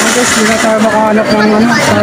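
Voices of a crowd: people talking close by over a general street babble.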